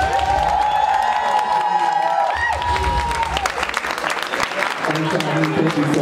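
Crowd cheering and clapping: high whooping voices held for about three and a half seconds over steady clapping, and the clapping carries on after the whoops end.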